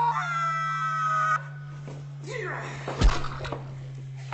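A man's long, high-pitched scream, held and wavering, cuts off abruptly about a second and a half in. Swishing movement follows, then a sharp thump about three seconds in, all over a steady low hum.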